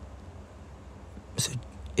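Low steady hum under quiet room tone, with a single short spoken word about one and a half seconds in.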